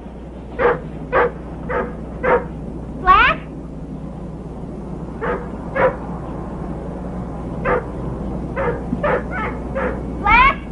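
A dog barking repeatedly in short single barks, about two a second at first and then more spread out, with one rising yelp about three seconds in. A steady low hum lies underneath.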